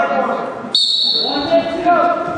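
A referee's whistle blown once: a shrill, steady note that starts suddenly about a second in and lasts about a second. Shouting voices of coaches and spectators come before and after it.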